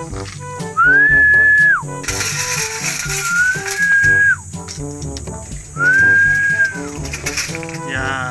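Three long, steady whistles, each about a second long, rising onto the note and dropping off at the end, over background music: a feeding call to racing pigeons.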